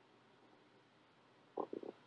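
Near silence, then near the end three quick, low, throaty pulses from a man's voice at the microphone.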